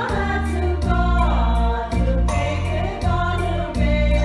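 Women's choir singing a hymn in Hmong, over instrumental accompaniment with sustained low bass notes.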